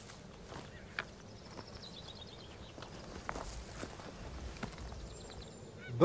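Faint footsteps on dry, stony hillside ground, a few scattered steps. A faint high trill is heard partway through.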